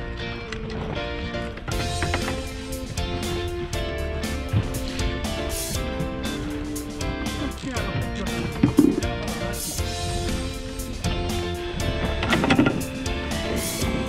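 Background music with a steady beat, growing fuller about two seconds in.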